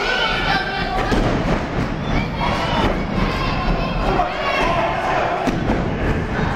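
A wrestler's body thuds onto the wrestling ring mat about a second in as he is slammed, while a small crowd shouts and cheers.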